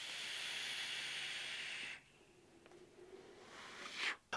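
A long draw on a vape, a rebuildable dripping atomizer on a mechanical 20700 mod: a steady hiss of air pulled through the atomizer's airflow as the coils fire, stopping about two seconds in. A soft exhale begins near the end.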